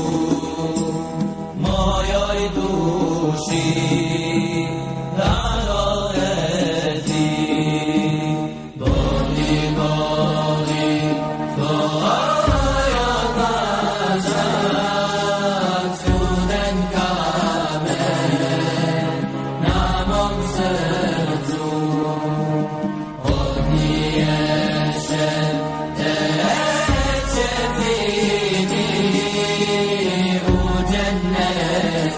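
Chanted vocal music: a single voice sings long, sliding melodic phrases over a low pulse that comes about every three and a half seconds.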